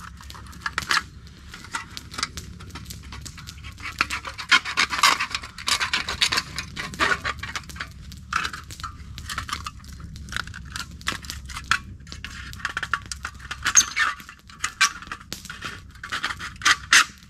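A knife blade sawing and scraping through the thin sheet metal of a tin can, in rapid, irregular strokes of rasping scratches that come in bursts, heaviest around the middle and again near the end.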